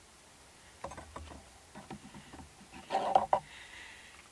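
Light handling noises at a workbench: scattered faint clicks and knocks, then a brief louder scrape about three seconds in. No power tool is running.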